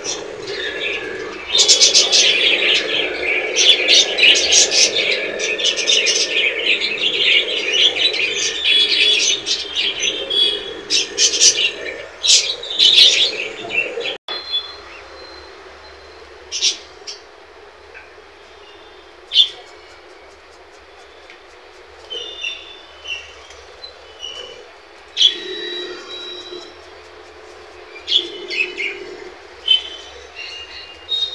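Pet budgerigars and a cockatiel chirping and chattering, a dense, steady twittering for about the first half. The sound then cuts off sharply and only scattered single chirps follow.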